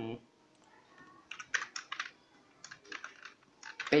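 Computer keyboard keys being pressed in two quick runs of clicks, one a little over a second in and another near the end.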